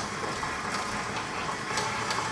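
KitchenAid stand mixer running steadily on low, its paddle attachment working cold butter into flour and sugar in a glass bowl.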